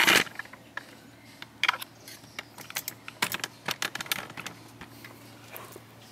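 Handling noise as a camera is repositioned: a loud rustle at the start, then scattered light clicks and taps, a few in quick clusters around the middle.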